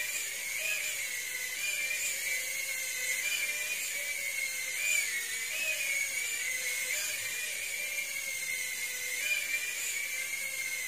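DM104S mini quadcopter drone hovering, its tiny motors and propellers making a steady high-pitched whine that wavers slightly up and down in pitch.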